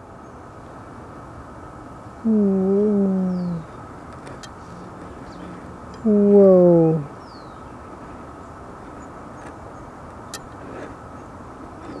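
A woman's voice making two short hummed sounds, each one to one and a half seconds long and dipping in pitch at the end, over a faint steady hiss with a couple of light clicks.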